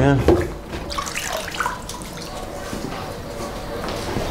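Water sloshing and splashing in a plastic tub as a gloved hand rinses a rusty steel part, washing off water-soluble rust-remover solution.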